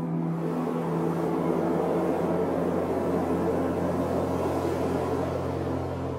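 Steady rushing rumble of steam venting from hot-ground fumaroles, over a sustained low drone of ambient background music.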